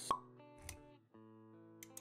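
Intro jingle for an animated logo: a sharp pop just after the start, a soft low thump around halfway, and quiet music with held notes that briefly drops out and comes back.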